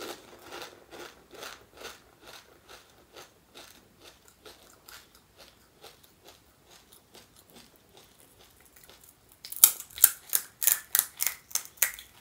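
Close-up chewing of panipuri with soft wet crunches about twice a second. Near the end comes a louder run of sharp, crisp crackling from a fried puri shell.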